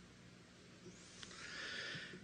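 Faint audience laughter that swells in the second half, in response to a joke.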